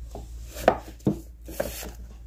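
Paperback manga volumes being handled on a bookshelf: two sharp knocks about halfway through as a book meets the shelf, then a brief rubbing slide of covers against the neighbouring books.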